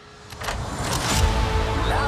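Trailer sound design: after a brief hush, a swelling whoosh with a deep booming rumble builds up and crashes into the music, with a rising tone near the end.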